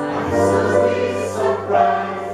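A woman and a man singing together with acoustic guitar accompaniment, the voices held on sustained notes without clear words.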